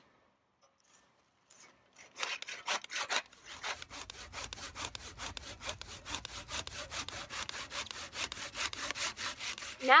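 Hand saw cutting through a dead, dry grapevine arm: quick, even rasping strokes, several a second, that start about two seconds in after a brief near silence. The arm is being cut off because dead arm disease has killed it.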